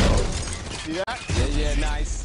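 A loud crash over music at the start, then a voice crying out with bending pitch for about a second over the music.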